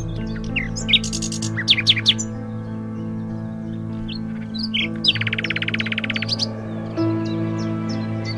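Songbird chirps over soft background music with long held low notes: a cluster of quick chirps about a second in, a fast trill of rapidly repeated notes lasting about a second midway through, and more scattered chirps near the end.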